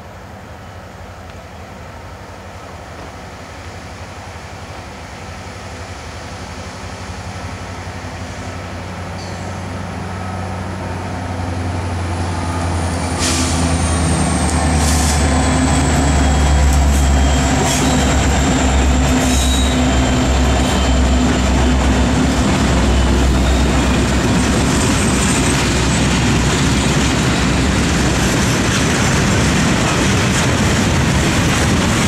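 Norfolk Southern freight train led by EMD SD70ACe diesel locomotives, approaching and passing. The diesel engine sound builds steadily and is loudest about 15 seconds in as the locomotives go by, with a thin high whine that drops in pitch and a few sharp wheel clicks. After that comes the steady rolling of the freight cars.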